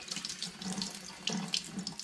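Kitchen mixer tap running water over a glass wine bottle held in the stream, splashing unevenly into the sink as the outside of the bottle is rinsed.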